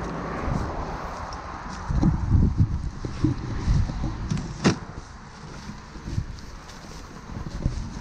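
Footsteps and rustling through dry fallen leaves, twigs and branches in undergrowth, with irregular thuds and one sharp crack about halfway through. A passing car on the road fades over the first second or so.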